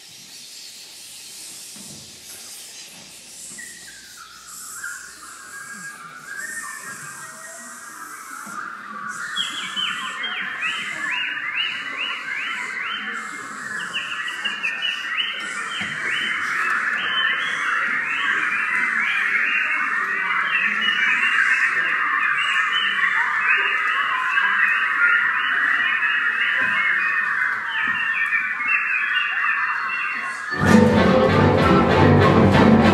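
An improvising ensemble making breathy, hissing sounds that give way, a few seconds in, to a dense swarm of short, high, chirping whistle-like notes. The swarm thickens and grows steadily louder in a long crescendo.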